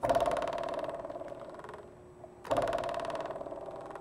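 A buzzing tone that starts abruptly and fades over about two seconds, then starts again about two and a half seconds in and fades once more.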